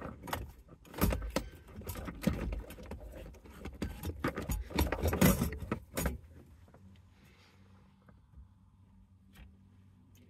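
Radio module and plastic wiring connectors being handled and set back into a truck's dash cavity: a run of clicks, knocks and rattles, stopping about six seconds in.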